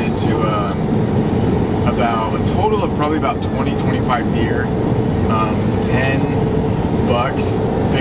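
Steady road and engine rumble inside the cabin of a moving Ford pickup truck, with a faint steady hum on top and a man's voice talking over it.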